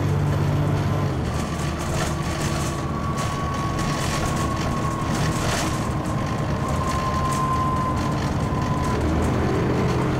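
Dennis Trident 2 double-decker bus's diesel engine and ZF four-speed automatic driveline, heard from inside the lower deck. The engine note changes about a second in, and a thin steady whine that drifts slightly lower runs until near the end, when the earlier engine note returns.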